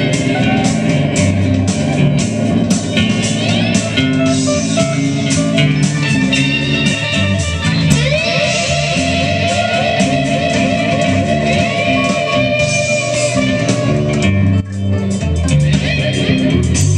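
Electric band jam in a 6/8 groove: drum kit, bass guitar and electric guitar playing together. About halfway through, the lead guitar holds one long note for several seconds.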